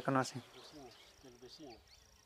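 A man's voice trails off at the start, then faint talk continues in the background over a faint, steady, high-pitched insect trill that starts about half a second in.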